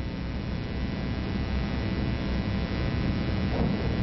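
Steady hiss with a low electrical hum, slowly getting louder: the background noise of an old video recording.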